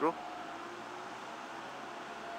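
Steady background noise of a quiet town-centre street, a low even hum of distant traffic with a faint steady whine running through it.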